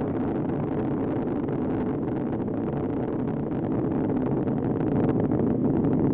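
Space Shuttle Atlantis's rocket roar: a steady, crackling rumble from the solid rocket boosters and the three main engines, the main engines throttled down to 72% of rated thrust through maximum dynamic pressure. It grows slightly louder toward the end.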